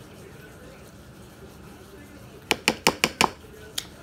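Table knife tapping and clinking against a dish while tuna salad is scooped for sandwiches: a quick run of about six sharp clicks about two and a half seconds in, then one more near the end.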